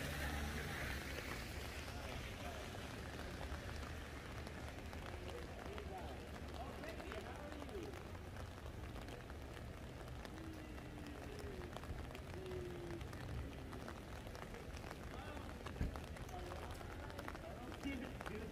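Rain falling on a wet city street, with a steady low rumble of traffic and indistinct voices of passers-by. A single sharp knock sounds late on.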